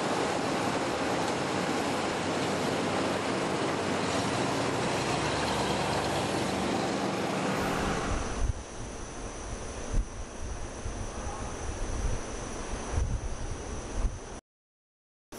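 Airstream astronaut van motorhome driving past, a steady rush of engine and road noise. About eight seconds in, the noise falls away, leaving low, gusty wind buffeting the microphone.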